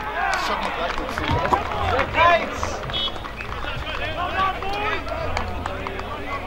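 Many distant voices of players and spectators shouting and calling out at once across a football ground, the loudest shout about two seconds in, over a steady low rumble.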